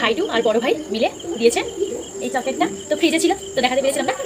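A steady high-pitched insect trill in the background, one constant note, under voices talking.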